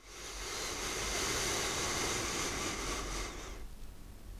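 A steady rushing noise, like wind or surf, swells up out of silence within the first half second, holds, and eases off shortly before the end.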